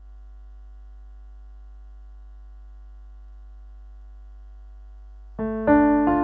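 A steady low hum with faint held tones, then piano chords begin loudly near the end, the opening of a hymn accompaniment.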